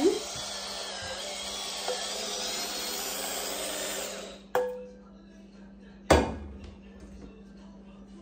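Cordless electric spin scrubber running at its lowest speed, its sponge-and-scrubby head whirring against the inside of a soapy stainless steel saucepan, then stopping about four seconds in. A click follows, then a loud knock about six seconds in.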